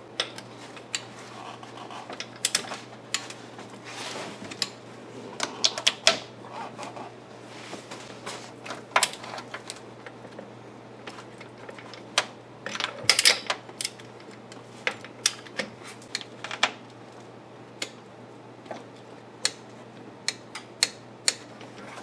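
Irregular sharp clicks of a socket wrench being worked on a harmonic balancer bolt as it is tightened, some coming in quick clusters, over a faint steady hum.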